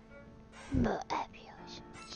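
Background music with a steady held note, and a short breathy vocal sound, in two quick parts, just under a second in.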